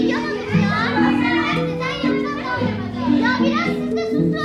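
Several children's voices chattering and calling over one another in a large, echoing room, over background music of slow, held low notes.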